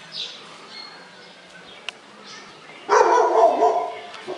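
A dog barking in a loud burst lasting about a second, starting about three seconds in. Faint bird chirps come before it.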